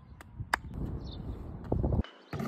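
A single sharp handclap about half a second in, then a low rumbling noise that grows louder near the end.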